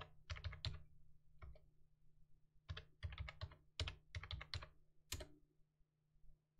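Computer keyboard keys being typed in several short bursts of keystrokes with pauses between, over a faint steady low hum.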